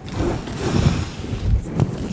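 Clothing rubbing against a clip-on microphone: an uneven rustling hiss with several low thuds.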